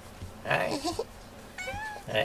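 A domestic cat meowing. A short breathy sound comes about half a second in, then a brief pitched meow near the end.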